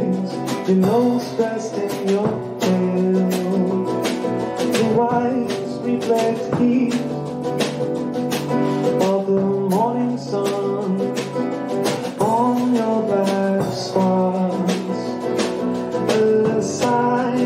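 Nylon-string acoustic guitar playing an instrumental passage of a song, with a run of regular strokes and sustained notes.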